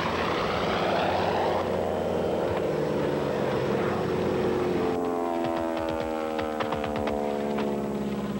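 Piston-engine propeller warplanes flying past, the engine drone falling in pitch as each one goes by; a second pass begins about five seconds in.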